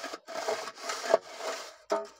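A mason's straight edge scraping back and forth along wet cement mortar at the base of a brick wall: about four rough rasping strokes, with a sharper scrape near the end as it comes away.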